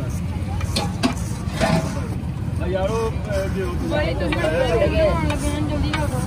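A metal spatula scraping and knocking on a large flat tawa griddle as wet haleem is worked across it, with a few sharp knocks in the first two seconds. Under it runs a steady low rumble of street traffic, and voices talk in the background from about halfway.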